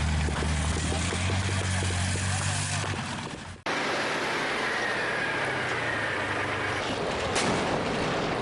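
Military tank running, its engine a steady low drone with a regular clatter of about five ticks a second from the tracks. The sound fades and cuts off sharply after three and a half seconds into a rougher, noisier rumble with one sharp crack near the end.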